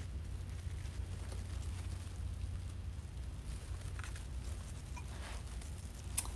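Quiet room with a steady low hum and faint rustling of ribbon and deco mesh as a bow is pressed onto a wreath, with a few soft clicks about four and five seconds in.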